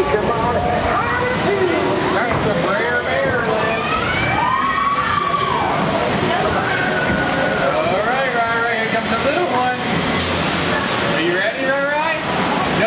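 Steady rush and slosh of the log flume's flowing water around the boat, with indistinct voices rising and falling over it.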